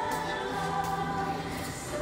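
Background music with choral singing, a long held note sounding through most of the moment.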